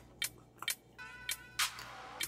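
Faint background music under soft mouth sounds of someone eating spicy food: a few clicks, then a brief breathy exhale near the end.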